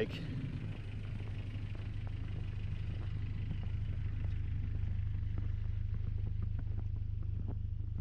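Toyota Sunrader's 22R four-cylinder engine idling, a steady low rumble that grows slightly louder.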